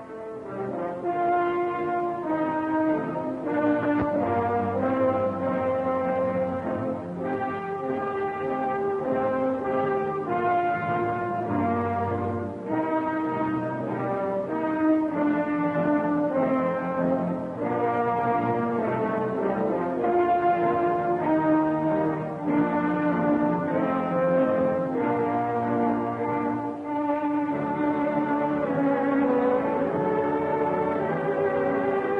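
Orchestral film-serial score with brass carrying a melody of held notes that change about once a second, playing without a break.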